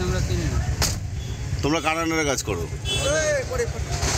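Steady low rumble of a car running, heard from inside the cabin, with a single click just under a second in and a voice speaking briefly in the second half.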